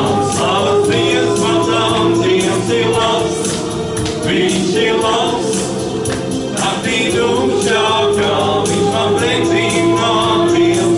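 A worship song in Latvian sung by a small vocal group, two men and a woman, into microphones, with sustained low notes held underneath the voices throughout.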